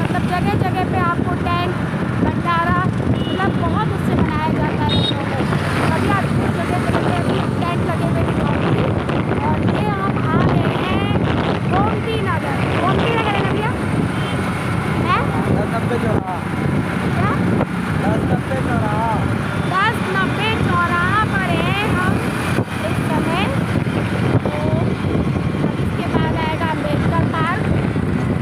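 Wind buffeting the microphone and steady road and traffic noise while moving along a road in the open, with short high chirping calls over it throughout.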